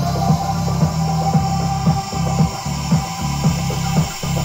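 Electronic house-style music played through the DAW: a steady beat of about two hits a second over a heavy bass line, with sustained synthesizer tones above.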